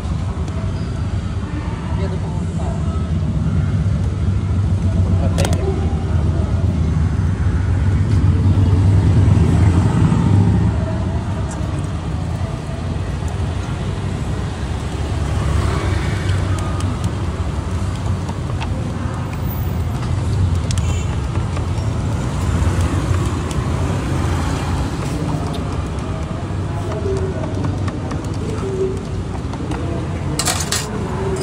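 Steady road traffic noise with an engine running nearby as a low, even hum, loudest about eight to ten seconds in, with voices in the background.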